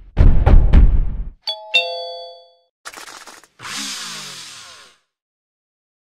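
Logo ident sound effects: about three heavy thumps in the first second, then a two-note chime, then two short bursts of hiss, the second with a falling sweep.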